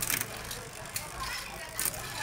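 Chain running through the Shimano Altus rear derailleur of a Trinx X1 mountain bike as the rear wheel and 9-speed cassette spin, with two sharp clicks, one at the start and one near the end, as the chain shifts up the cassette sprockets.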